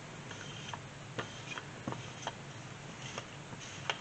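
Sticky lint roller being rolled over the top edges of a jelly roll of fabric strips to pick up cutting fuzz, giving scattered faint ticks as the adhesive lets go of the fabric.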